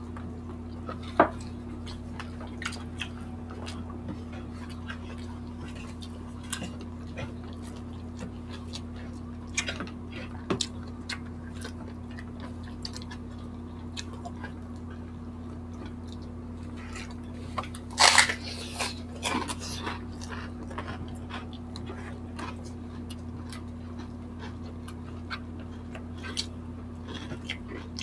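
Two people eating by hand at close range: chewing and small clicks and crackles as food is picked apart, with a louder burst of noises about 18 seconds in, over a steady low hum.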